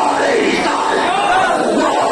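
A man loudly chanting a verse of Urdu devotional poetry (naat) into a microphone, with the voices of a crowd in the hall behind him.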